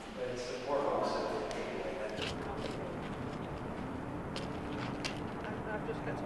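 Indistinct voices of people talking away from the microphone, over a steady outdoor hum, with a few sharp clicks or taps in the middle.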